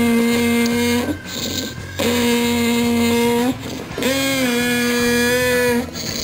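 A toddler singing into a toy microphone, holding three long, steady "aah" notes on the same pitch with short breaks between them, played loud through the toy's speaker.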